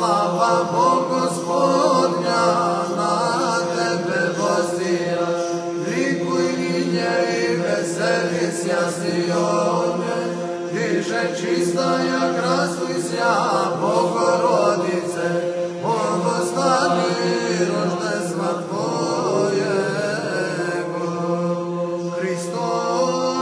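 Orthodox church chant in the Byzantine style, sung a cappella: a male voice sings a long, ornamented melody without clear words over a steady held drone (ison).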